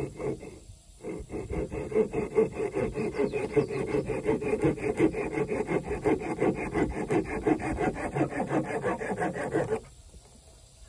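A hand tool worked rapidly back and forth across the wood of a natural-fork slingshot blank, making a dry rasping scrape at about five or six strokes a second. The strokes pause briefly at the start, then run on steadily and stop abruptly shortly before the end.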